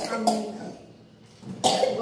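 A person's voice and a cough: a short vocal sound at the start, a brief lull, then a cough and more voice about a second and a half in.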